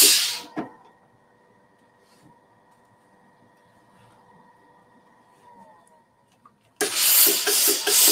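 Steam hissing from a LauraStar steam iron for the first second, then cutting off, with a single knock just after. A faint low hum follows for several seconds before the steam hisses again for the last second or so.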